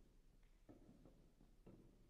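Near silence: hall room tone with a low steady hum and a couple of faint soft knocks or rustles.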